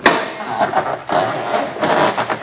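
A sharp clack as the Ford Explorer's hood latch lets go, followed by knocking and rattling handling noise as the hood is lifted open.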